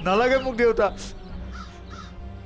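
A man's anguished crying wail, one drawn-out sob in the first second that rises and then falls in pitch. Low background music holds a steady note underneath.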